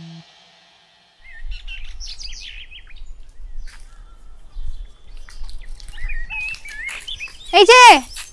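Small birds chirping intermittently among trees over a low outdoor rumble, after a song cuts off at the very start. Near the end a voice calls out loudly, "hey".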